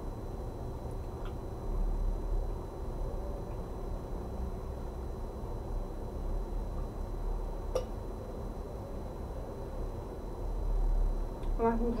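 Quiet eating at a table: a fork clicks twice against a plate over a low, steady room rumble.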